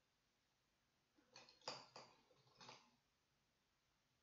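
A few light clicks and taps of wooden pencils knocking together as they are picked up and handled, bunched between about one and three seconds in; quiet otherwise.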